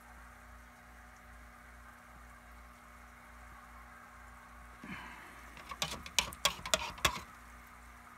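Steady background hum with a faint hiss; then, from about five seconds in, a quick run of sharp clicks and sloshes for about two seconds as a pH pen is stirred around in a plastic cup of water to agitate the solution.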